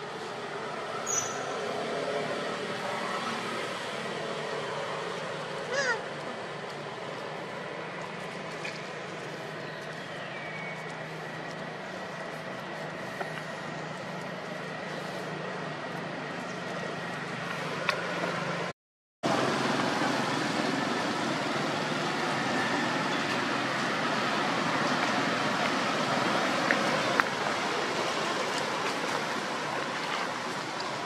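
Steady outdoor background noise with a few faint, brief high calls and pitch glides in the first half. It cuts out for a moment about two-thirds of the way through and returns somewhat louder.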